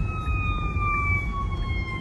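An emergency-vehicle siren wailing, its pitch sliding slowly down, heard from inside a moving car over steady road rumble.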